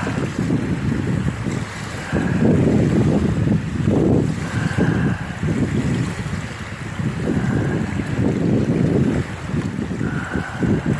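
Wind buffeting the microphone in a strong, gusting low rumble, over small lake waves washing onto the shore.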